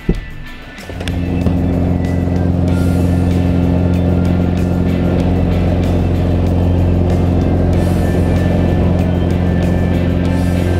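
Single-engine high-wing plane's piston engine and propeller running at full power on the takeoff roll. It comes in suddenly about a second in and holds as a loud, steady drone.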